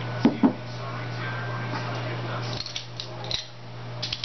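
Two quick knocks of a glass beer bottle set down on a wooden table, then light metallic clinking and rattling from a metal bottle opener on a lanyard being picked up.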